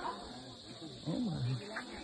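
Voices of people some way off, with one voice calling out in a falling tone about a second in.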